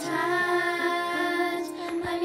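A group of children singing a song together, holding long notes, with a musical accompaniment underneath.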